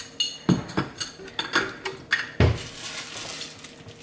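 A glass clip-top jar of hard mints being handled, giving a run of sharp glassy clinks and knocks, some ringing briefly, with a heavier knock about two and a half seconds in.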